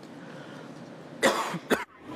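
A person coughing twice, a longer cough followed by a short one, over faint background room noise.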